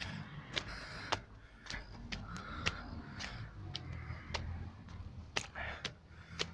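Footsteps on stone stairs, steadily climbing at about two steps a second, over a low rumble.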